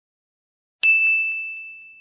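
A single bright ding, an editing sound effect marking the change to the next segment: struck suddenly after a short silence, about a second in, then ringing out on one high tone as it fades.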